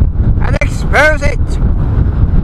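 Strong wind buffeting the microphone, a loud, steady low rumble, with a short burst of a man's voice about half a second in.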